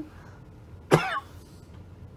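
A single short cough from the reader, about a second in.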